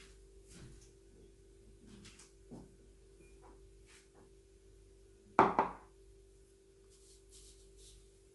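Kitchenware handled on a counter: two quick, sharp knocks about five and a half seconds in, over a steady faint hum and light rustling. Near the end there is a faint hiss as brown sugar is poured onto raw pork.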